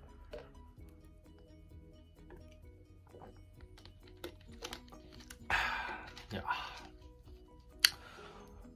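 Soft background music throughout, under small clicks and gulps of a person drinking fizzy soda from a glass bottle. Just past the middle there is a breathy noise lasting about a second, and near the end a single sharp click.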